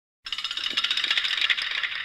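Fast rattling clicks, about a dozen a second and thin in tone, starting a quarter second in.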